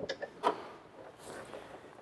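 Latch click and a short clunk from the body panels of a 2022 Chevy Bolt EV as a lid is worked, most likely the hood being released and raised. There is a small click at the start and a sharper knock about half a second in, then faint handling noise.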